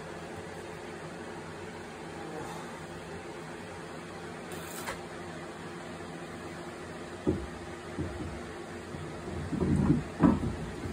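A steady background hum, with a few dull knocks in the last few seconds as a tyred alloy wheel is lifted onto the car's hub and pushed onto the wheel studs.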